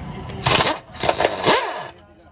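Pneumatic impact wrench running in two bursts, a short one about half a second in and a longer one of nearly a second, on a nut of a car's electric power-steering rack, undoing it as the rack is dismantled.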